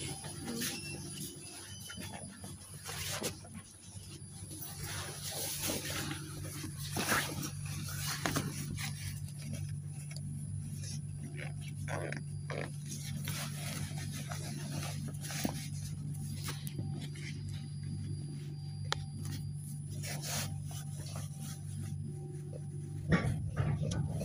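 Cabin of a KTM-28 (71-628-01) low-floor tram: a steady low electrical hum from the tram's onboard equipment while the tram stands still, with scattered light clicks and knocks.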